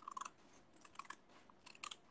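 Faint crinkling and small clicks of folded craft paper being handled, ahead of cutting it into four pieces along its folds.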